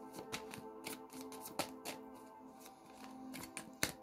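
Tarot deck being shuffled by hand: a run of soft, irregular card clicks and flicks, a sharper one just before the end. Quiet background music with steady held tones runs underneath.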